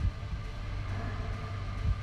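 Movie-trailer sound design: a low rumbling drone with a deep thump at the start and another near the end, under faint sustained tones.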